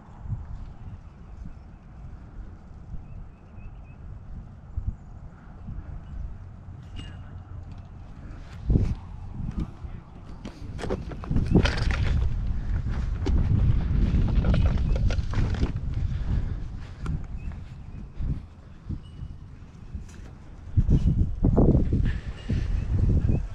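Wind rumbling on the microphone outdoors. It grows louder and busier in the middle, with handling knocks and rustling as the camera is moved.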